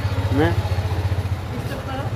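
CNG auto-rickshaw's small engine idling close by with a steady low, evenly pulsing throb. A brief voice is heard about half a second in.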